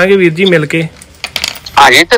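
A voice speaking over a recorded phone call. It breaks off for about a second, with a few clicks on the line in the pause, and speech resumes near the end.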